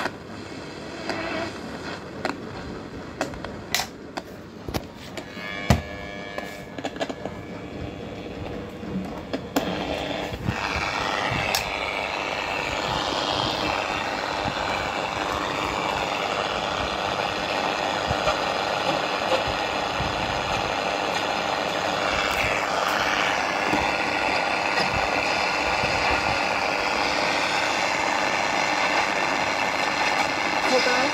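Philips AL235 transistor radio being handled and tuned: a few seconds of clicks and light noise, then from about ten seconds in a steady loud hiss of static between stations, with sliding whistles now and then as the dial moves.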